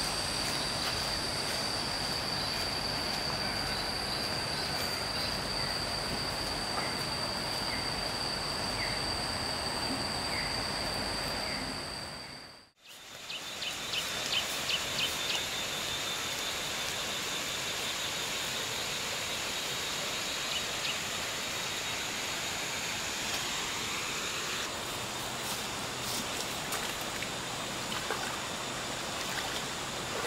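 Steady outdoor ambience with a continuous high-pitched insect drone over a background hiss. The sound drops out briefly about halfway through and returns with a slightly higher insect drone and a few short chirps.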